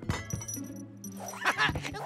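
Cartoon background music with steady sustained tones, a few short clicks near the start, and a short, high-pitched, wavering animal-like vocal sound about one and a half seconds in, the loudest part.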